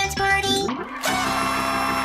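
Cartoon soundtrack: a bouncy tune of plucked notes breaks off under a second in. A short sliding tone follows, then a steady whirring, buzzing machine sound effect for the animated jukebox robot as it shakes.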